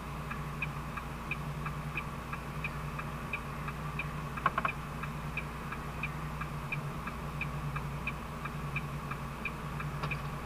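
A truck cab's indicator flasher clicking steadily, about one and a half clicks a second, over the low steady hum of the idling engine. A brief clatter sounds about four and a half seconds in.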